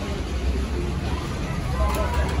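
A steady low rumble under a general fairground din, with faint voices near the end.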